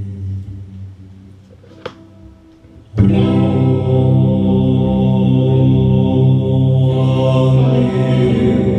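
Electric guitar through an amp: a chord rings and fades away over the first two seconds, a small click follows, and about three seconds in a loud chord is struck and held as the song begins.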